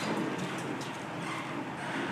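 Steady background room noise, an even hiss with a few faint clicks.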